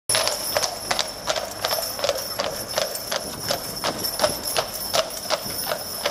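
Hooves of a pair of heavy draught horses pulling a loaded brewery dray, clip-clopping on a tarmac road in an even walking rhythm of about three strikes a second.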